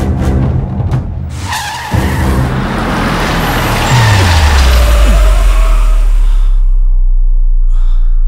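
Car tyres screeching for several seconds as the car brakes hard to a stop, over a dramatic film score that ends in a deep, falling bass drone.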